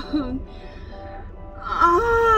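A woman's long, wavering wail of mock exasperation, loud and held, starting about one and a half seconds in.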